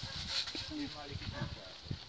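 Faint, distant voices in short broken fragments over a low microphone rumble.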